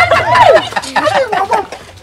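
A loud, high-pitched human voice crying out in rapid, wavering sounds that are not words, fading near the end.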